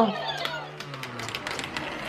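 The motorized vortex launcher of a Techno Gears Marble Mania Vortex 2.0 marble run hums steadily, then drops in pitch and dies away about a second and a half in as it winds down after being switched off. Marbles click faintly as they roll on through the plastic tracks.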